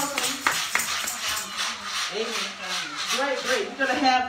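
A tambourine shaken in a steady rhythm, about four to five jingling beats a second, with a voice rising and falling over it in the second half.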